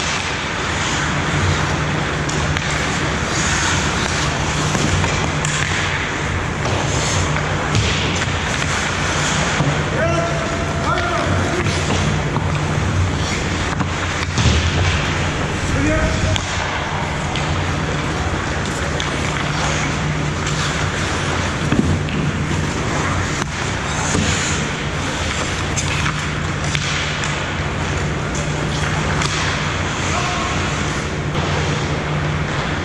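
Ice hockey game sounds in an indoor rink: skates on the ice and occasional knocks of sticks and puck, with brief distant shouts from players over a steady low hum.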